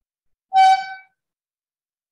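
A single short, loud beep about half a second long, steady in pitch, like a horn honk.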